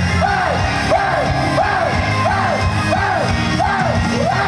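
Upbeat J-pop idol song played loudly over a hall PA during a live stage performance. A riff of rising-and-falling notes repeats about one and a half times a second over a steady beat, with the crowd yelling along.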